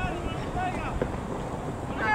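Wind rumbling on the microphone, with a few short voices calling out faintly across the pitch.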